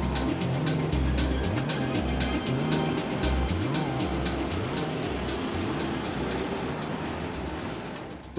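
Background music with a steady beat and a repeating bass line, fading down toward the end.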